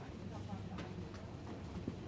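Footsteps at a walking pace, about two or three steps a second, over a steady low hum, with faint voices in the background.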